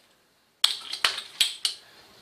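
Four sharp clinks of glass and metal, starting about half a second in: glass test tubes knocking together on a metal tray.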